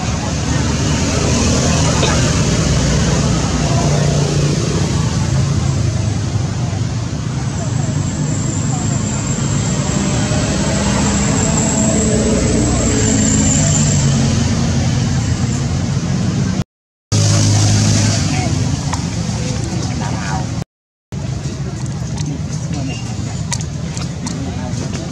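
Steady outdoor background noise like road traffic, with people's voices talking in the background; the sound cuts out briefly twice in the second half.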